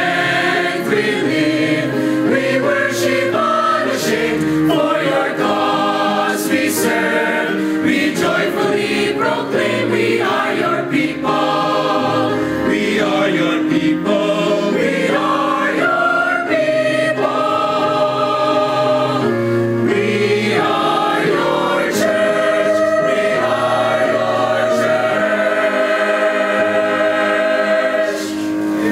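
Mixed choir of men's and women's voices singing a worship song in harmony, the notes moving through the phrase and then settling into one long held chord over the last six seconds or so.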